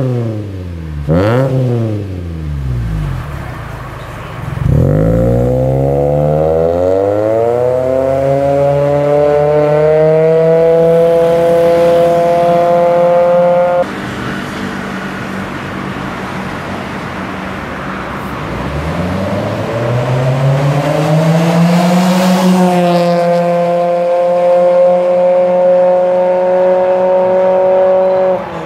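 Mitsubishi Lancer Fortis with an aftermarket dual-side, single-outlet rear exhaust, blipped sharply near the start. About five seconds in, the engine note climbs steadily as the car pulls away and settles into a steady drone. It drops off suddenly around the middle, then climbs again and holds steady near the end.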